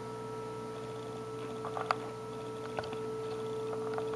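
Steady, not very loud audio test tone: the Eico 324 signal generator's modulated RF output demodulated by a stereo receiver and heard through its speaker. A few light clicks come about two seconds in.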